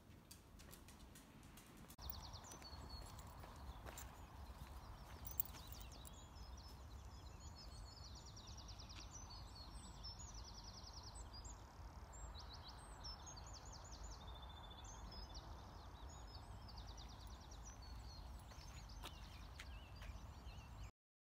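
Songbirds chirping and trilling in quick repeated notes, starting about two seconds in, over a low rumble on the microphone and a faint steady background hum.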